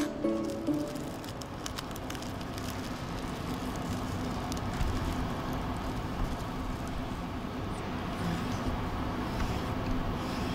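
Plucked-string background music ending in the first second, then steady room noise with a low hum and light crinkling clicks of plastic film being folded by gloved hands.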